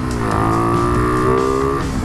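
Motorcycle engine running under way, its pitch climbing steadily after a dip at the start, then falling near the end as with a gear change, over low wind rush.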